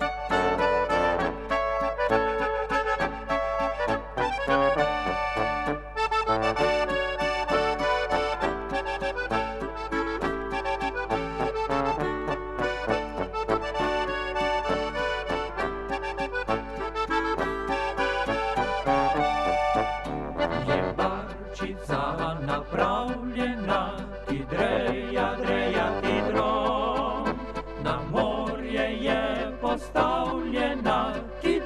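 Slovenian Oberkrainer-style (narodno-zabavna) band music: an accordion leading the ensemble through an instrumental passage, with brass and clarinet. About two-thirds of the way through the texture thins and wavering melody lines take over.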